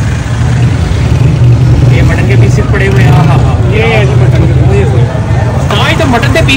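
A loud, steady low mechanical drone, with indistinct voices over it.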